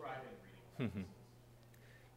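Speech only: a man's brief "mm-hmm" about a second in, with a fainter voice trailing off just before it. A steady low hum sits underneath.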